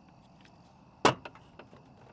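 A small plastic camp lantern set down on a tabletop: one sharp knock about a second in, followed by a few faint ticks.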